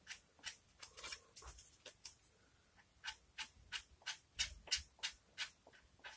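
Sandpaper on a sanding block rubbing over body filler on a guitar body: quick, short rasping strokes about three a second, pausing briefly a little after two seconds.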